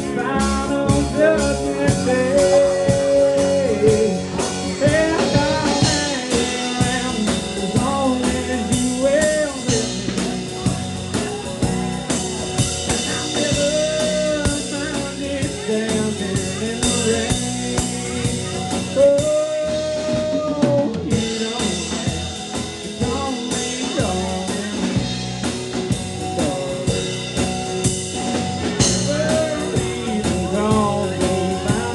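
A live band playing a song: a singer carrying a melody with held notes over guitar and a steady drum beat.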